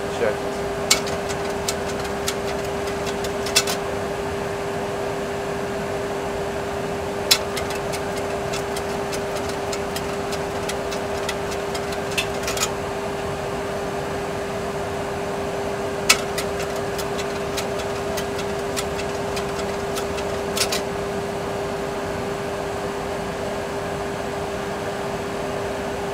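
Steady cockpit background of a Boeing 737 Classic flight simulator: a constant hum over an even rush of air noise. About half a dozen sharp, isolated clicks come through it from the pilots working switches and knobs on the panel.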